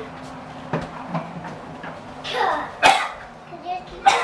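Short, indistinct voice sounds from a young child and an adult, with one sharp, loud burst nearly three seconds in.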